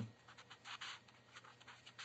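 Faint strokes of a marker writing a word on paper, a run of short scratches strongest just under a second in.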